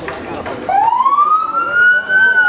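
A siren starts about two-thirds of a second in and winds up in a slow rising wail that levels off near the end, louder than the crowd voices around it.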